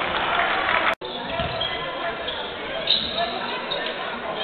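Basketball game sound in an indoor arena: a ball bouncing on the hardwood court among voices and hall noise. The sound drops out for an instant about a second in.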